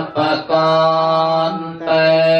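Theravada Buddhist Pali chanting by low male voices on one steady, held pitch, with short breaks at the start and near the end.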